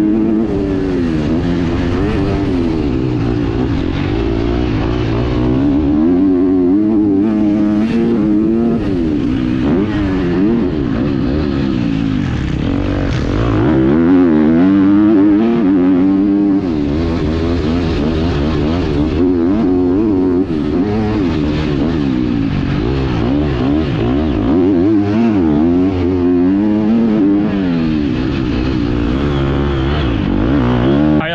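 A 250 motocross dirt bike engine being ridden hard: its pitch climbs and drops again and again as the rider twists the throttle, shifts and backs off for turns and jumps, heard from the rider's helmet.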